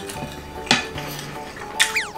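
A spoon and chopsticks scraping a plate clean of leftover sauce, with two sharp clinks, one about a third of the way in and one near the end, over background music.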